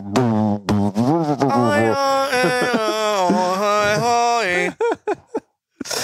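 A man's voice droning and warbling without words, mimicking the muddy, brick-walled sound of an over-compressed song. It breaks into short choppy bits near the end.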